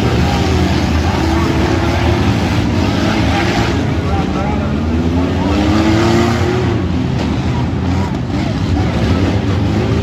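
Several demolition-derby minivan engines running hard together, revving up and down, with one clear rising rev about halfway through.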